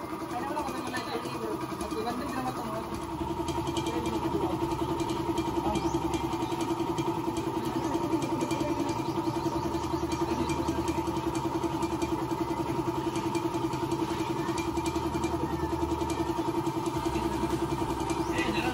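A small engine running steadily at idle, its pitch holding level with an even rapid pulse; it grows a little louder about three seconds in.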